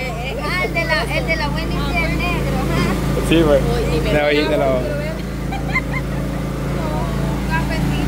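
Several voices talking and laughing over a steady, low motor hum that runs under them throughout.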